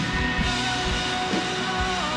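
Live worship band playing rock-style music: bass guitar and drums under steady held chords, with no voice on top.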